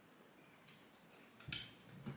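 Near silence while a mouthful of breaded chicken is chewed with the mouth closed, then one short mouth noise about one and a half seconds in.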